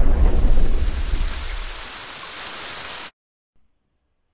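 Rain-and-thunder sound effect: the low rumble of thunder dies away into steady rain hiss, then cuts off suddenly about three seconds in.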